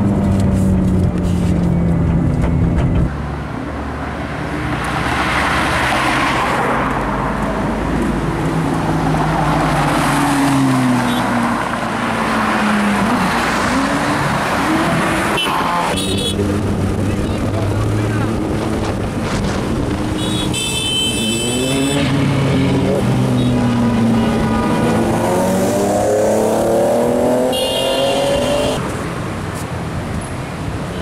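Ferrari sports-car engines revving and accelerating, the pitch climbing and dropping again and again, in a string of separate clips. The first is heard from inside the cabin. Short high-pitched sounds come in briefly about two-thirds of the way through and again near the end.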